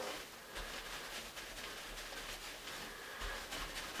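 Faint, scratchy rubbing of a paper towel wiped back and forth over a chrome shower fixture.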